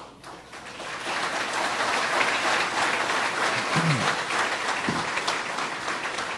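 Audience applauding. The clapping builds over the first second or so, holds steady, and eases a little near the end.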